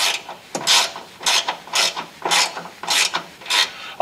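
A screw being turned into a drilled hole by hand with a screwdriver: about seven raspy turning strokes, roughly two a second.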